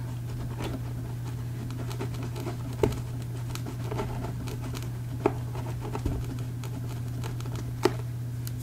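Fingers pressing and smoothing a glued fabric edge into a book cover: faint scratching of cloth on board with a few soft taps, over a steady low hum.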